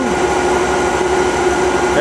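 Steady machine drone with a constant mid-pitched hum, from the running nine-coil rotating generator rig.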